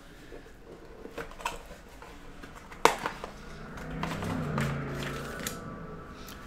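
Hands handling and opening a rigid cardboard trading-card box, making scattered light taps and clicks, with one sharper click about three seconds in.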